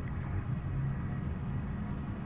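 A steady low rumble with a faint hum underneath: background noise with no distinct event.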